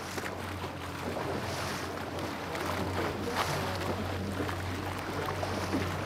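Water rushing and splashing along the bow of a small wooden clinker-built sailboat, a François Vivier Ilur, as it sails through light chop.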